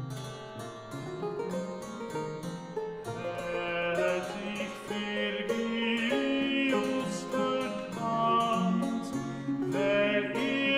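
Renaissance polyphonic music played by an early-music ensemble: several interweaving melodic lines over a plucked, harpsichord-like accompaniment. The texture grows fuller and louder from about three seconds in.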